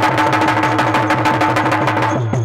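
Live stage dance music: hand drums played in a fast, even rhythm over a steady held note.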